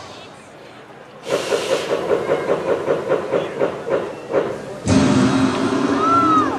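A projection-mapping show's soundtrack over outdoor loudspeakers: about a second in, a hissing effect starts, pulsing about four times a second. Near the end, music comes in with a sudden loud start.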